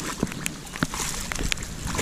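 A hooked largemouth bass splashing at the water's surface, with scattered sharp clicks and knocks.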